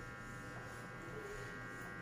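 Faint steady electrical buzz over a low hum, the room's background noise, with no other distinct sound.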